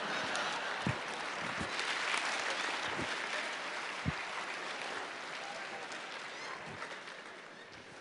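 Large audience applauding, fading away gradually over several seconds.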